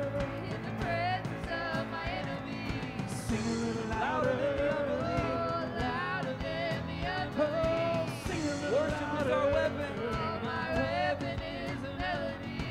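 Live worship band playing a song: several voices singing a melody together into microphones over keyboard, electric guitar and drums, with a steady beat.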